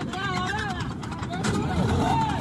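Several men's voices calling out in the clip's own audio, over the steady running of a tracked armoured vehicle's engine.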